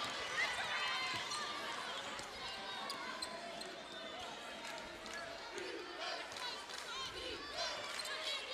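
Basketball being dribbled on a hardwood arena floor, with sneakers squeaking on the court over a low murmur of voices.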